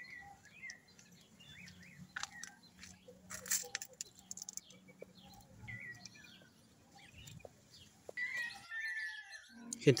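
Birds chirping, with short scattered chirps throughout and a longer call near the end. A brief sharp sound stands out about three and a half seconds in.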